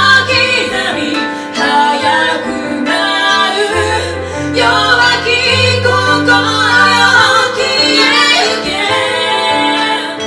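Twenty-five-string koto and piano playing a song together, the piano holding low bass notes that change every second or two under the koto's plucked melody.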